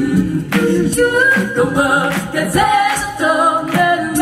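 All-female a cappella group singing live in harmony: a moving sung bass line under held upper chords, with a regular percussive beat about once a second.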